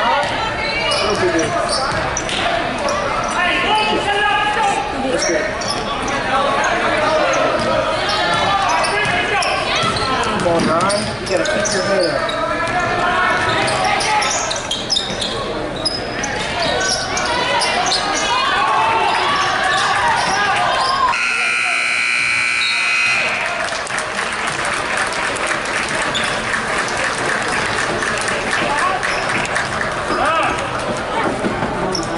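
Gym noise of a basketball game: voices calling and shouting over a ball being dribbled on the hardwood court. About two-thirds of the way in, the scoreboard buzzer sounds once for about two seconds, signalling a stoppage in play.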